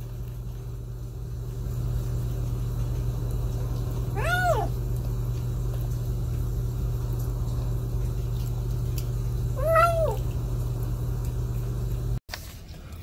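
A young kitten meowing twice, each a short call that rises and falls in pitch, the first about four seconds in and the second some six seconds later, over a steady low hum.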